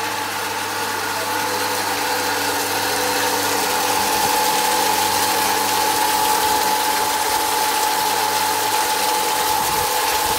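Electric water pump running with a steady hum and whine, while the water it drives pours from a pipe and splashes into a newly built concrete pond to fill it. The splashing gets a little louder a few seconds in.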